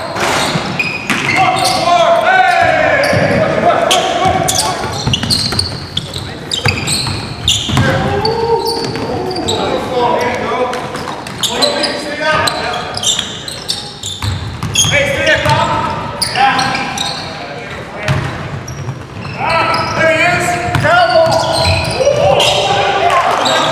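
A basketball bouncing on a hardwood gym floor, repeated sharp impacts as it is dribbled, with players' voices calling out over it.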